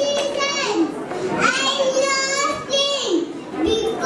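A young child speaking lines into a stage microphone in a high voice, in short phrases with brief pauses.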